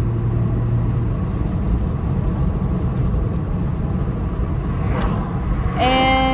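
Steady low road rumble and wind noise inside a moving car's cabin, with one short click about five seconds in.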